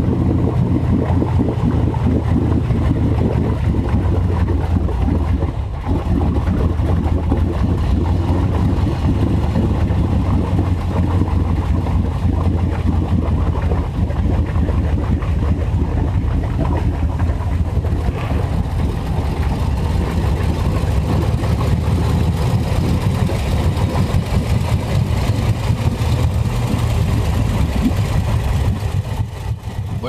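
Vehicle engine running steadily at low revs, with a brief drop in level about five and a half seconds in.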